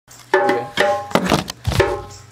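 Djembe played with bare hands: a quick run of ringing open tones and slaps, about four or five strokes a second, with a deep bass stroke near the end.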